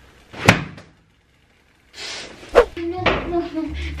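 A kitchen cupboard door knocks shut sharply about half a second in. After a break, a steady sizzle of bacon frying in the pan comes in, with a second sharp knock about two and a half seconds in.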